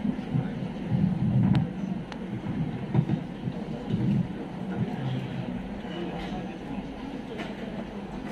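A lectern microphone being handled and adjusted. Irregular low rumbling bumps for the first few seconds and a few sharp clicks are followed by a steadier low hum.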